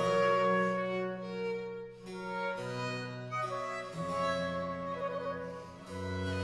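Baroque trio sonata for oboe, violin and basso continuo: the two melody instruments hold sustained notes over cello and harpsichord bass, with short breaks between phrases about two seconds in and near the end.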